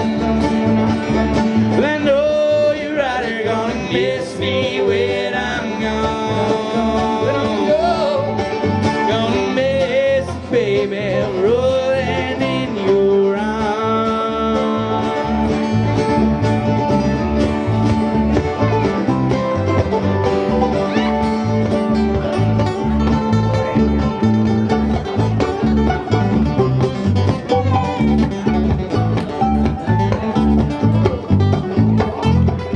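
Live acoustic guitar and mandolin playing an instrumental break in an up-tempo bluegrass-style tune: the guitar strums a steady rhythm under a plucked melody line.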